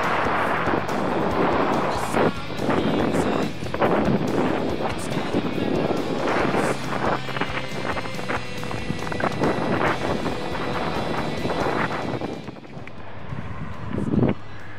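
Strong wind buffeting the camera microphone on a moving bicycle: a loud, uneven rushing that swells and dips with the gusts, easing near the end.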